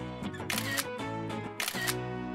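Two smartphone camera shutter clicks, about a second apart, over upbeat background music.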